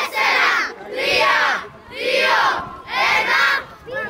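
A crowd of children shouting a countdown in unison in Greek, four drawn-out shouted numbers about a second apart.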